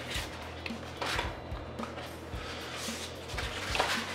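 Sheets of sandpaper rustling and flapping as they are sorted by hand and laid on a bench, in several short rustles, over background music.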